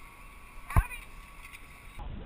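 One sharp metallic clack from zipline hardware at the trolley on the cable, about a second in, over faint outdoor background.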